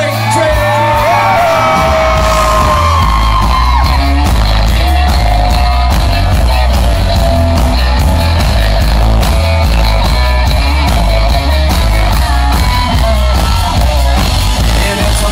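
Live country band playing loud amplified music: fiddle and electric guitar lines over bass and drums.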